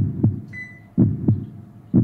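Heartbeat sound effect: a low double thump about once a second, each pair about a quarter second apart. About half a second in, a short high electronic beep sounds as the oven controls are pressed.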